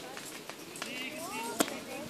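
A single sharp crack, the start signal for a sprint race, about one and a half seconds in, over a murmur of spectators' voices.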